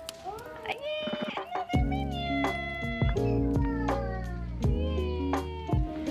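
A cat meowing several short times, with background music whose chords and deep bass come in a little under two seconds in.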